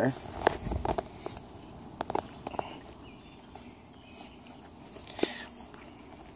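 Footsteps on loose limestone rubble while picking a way down a slope: irregular crunches and clicks, most frequent in the first few seconds, with one sharp click about five seconds in.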